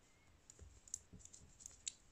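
Faint, scattered clicks of metal circular knitting needles tapping against each other as stitches are worked, about five small ticks in two seconds.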